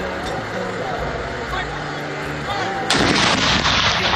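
Towed howitzer firing a blank round in a gun salute: a sudden loud boom about three seconds in that rings on for about a second, over a steady outdoor background.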